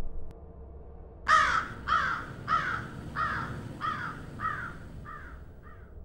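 A bird calling about eight times in a row. Each call is short and falls in pitch, and the calls grow fainter toward the end.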